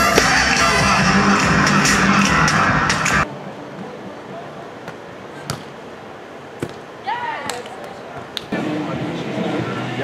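Beach volleyball play: a few sharp slaps of hands and forearms striking the ball, with a short shouted call from a player about seven seconds in. For the first three seconds a loud dense background covers the court sounds, then cuts off abruptly.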